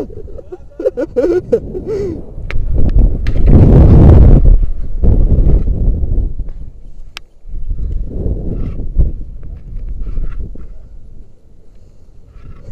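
Wind buffeting the microphone in repeated surges, loudest about four seconds in, as a rope jumper swings on the rope after the jump, with a few sharp clicks between the surges.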